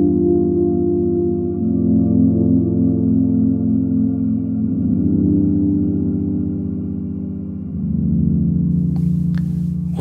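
Roland Aira S-1 synthesizer playing a slow, muffled ambient pad, its chord changing about every three seconds.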